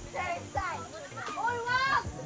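Children's voices calling out while playing, high-pitched, with a rising shout near the end.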